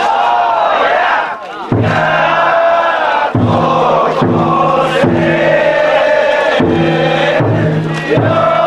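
Festival float bearers chanting and calling out in unison. From about two seconds in, deep beats repeat underneath, from the float's drum.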